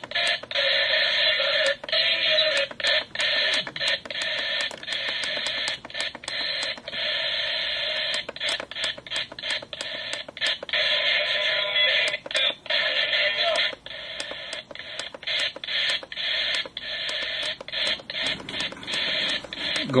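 Lalaloopsy toy alarm clock radio's small speaker playing garbled, static-laden radio, cutting out briefly again and again as it is stepped through the stations.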